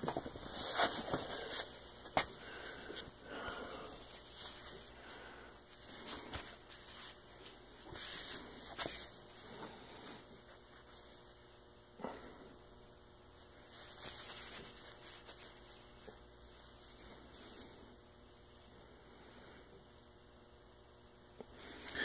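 Stiff layers of stitched denim rustling and brushing as they are handled and turned over, in soft irregular bursts, with one sharp click about halfway through.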